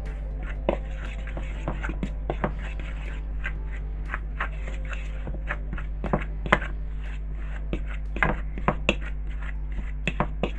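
A metal fork scraping and clicking irregularly against a plastic mixing bowl as butter is cut into flour for dough, over a steady low hum.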